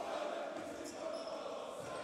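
Faint basketball arena ambience during live play: low, even crowd and court noise in a large hall.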